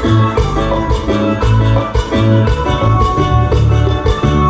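Live dance band music: a bass line stepping from note to note under drums and a melody.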